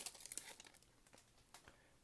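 Faint crinkling of a foil trading-card pack wrapper as the cards are worked out of it, dying away within the first half second, followed by a couple of small ticks.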